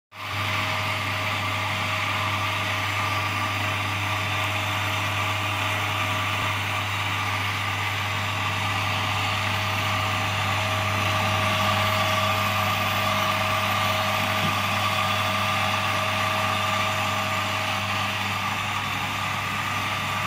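LUNAR electric burr coffee grinder running steadily while grinding coffee beans: the hum of its 350 W AC motor with the hiss of the ceramic burrs over it. It starts abruptly at the very start and holds even throughout.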